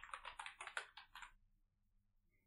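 Typing on a computer keyboard: about a dozen quick keystrokes that stop about one and a half seconds in.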